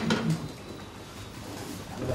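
A man's voice trails off in the first moment, then low room noise with a faint steady high whine, until a voice starts again at the end.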